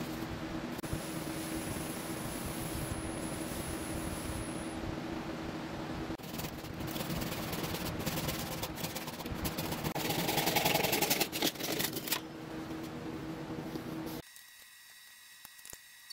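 Laguna Revo 18|36 wood lathe running with a steady motor hum while an oak bowl spins, with Briwax being rubbed onto it for a friction polish; a louder stretch of rubbing on the spinning bowl comes about ten seconds in. The lathe sound cuts off sharply about two seconds before the end, leaving a quiet room.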